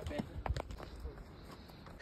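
A horse's hooves stepping on a dirt trail: soft, irregular knocks, with a faint voice in the background, fading toward the end.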